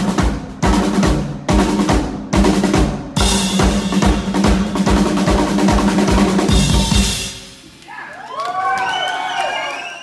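Live pop band with a drum kit ending a song: steady drum strokes, then a held final chord under a drum roll and cymbal wash that stops about seven seconds in. It is followed by a few short gliding tones as the sound dies away.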